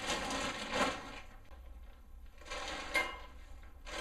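Two bursts of rustling and scraping, about a second each, from objects being handled.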